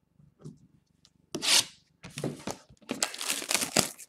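Wrapping being torn and crinkled off a sealed trading card box as it is opened: a short tear about a second and a half in, then steady crackling and tearing through the second half.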